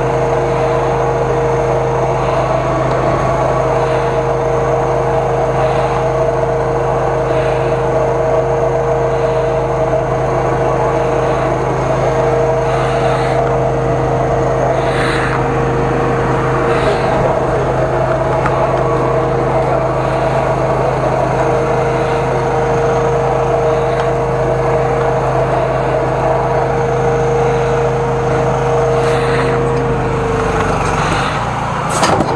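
High-pressure drain jetter running steadily: a constant engine-and-pump drone with a held higher tone, as its hose clears a blocked sewer drain.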